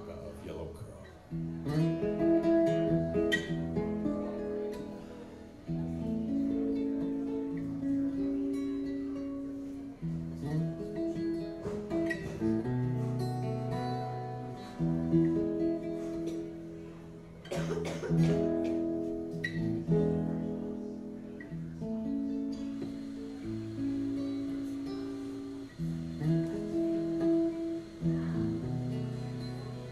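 Acoustic guitar played solo, chords struck every few seconds and left to ring, each one dying away before the next.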